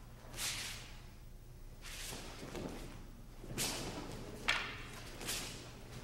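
Swishing rustles of hakama and bare feet sliding on tatami as two aikido practitioners move in a bokken exercise, with one sharp knock about four and a half seconds in, over a steady low hum.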